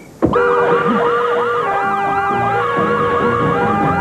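Several police sirens wailing at once, overlapping, starting abruptly about a quarter of a second in and staying at a steady loudness.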